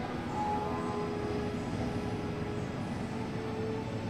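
Steady low rumble with a few faint held tones, the soundtrack of an animated planetarium show playing over the hall's speakers.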